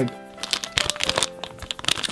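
A plastic My Little Pony blind-bag packet crinkling and crackling in the hands as it is handled, starting about half a second in, over quiet background music.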